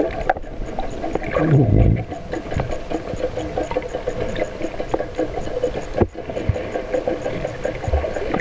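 Underwater noise picked up by a submerged camera: a steady hum of a boat engine carried through the water, with a fast, even high ticking about six times a second. There are a few low thumps, the biggest about two seconds in.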